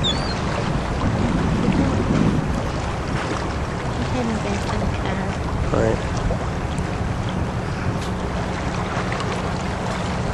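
Steady wind and water noise on open water, with wind rumbling on the microphone and a low hum from a small boat.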